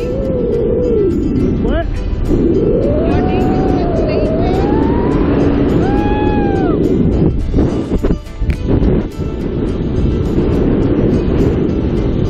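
Wind rushing over the camera microphone under a parachute canopy, a dense low buffeting that runs on steadily. Over it come a few long, drawn-out vocal exclamations that glide up and down in pitch, and background music.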